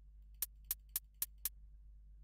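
Sampled closed hi-hat in a drum software plugin, its decay envelope cut short to make it tight: five short, bright ticks about four a second.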